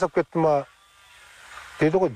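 A voice speaking, broken by a pause of about a second in the middle.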